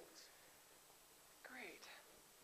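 Near silence: room tone, with a faint snatch of quiet speech near the end.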